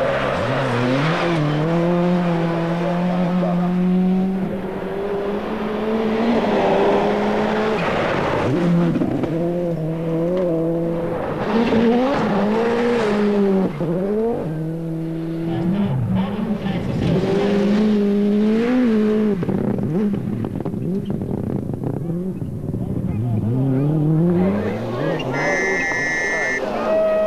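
Toyota Corolla WRC rally car's turbocharged four-cylinder engine at full throttle on gravel stages, the revs climbing and dropping again and again through gear changes, over the crunch and rush of the car on loose gravel.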